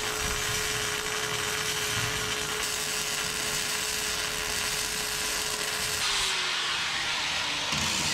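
Arc welding: the welding arc gives a continuous sizzling crackle as a bead is laid on the steel pieces held in the vise. Under it runs a steady whine that slides lower in pitch over the last two seconds.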